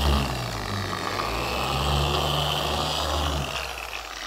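Meguiar's dual-action polisher running with a sanding disc against car paint coated with a polymer sealant, a steady hum that winds down near the end as it is switched off.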